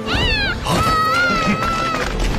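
Winged monster's screech, an animation sound effect: one short high shriek that rises and falls, then a long high cry that rises and holds steady, over background music.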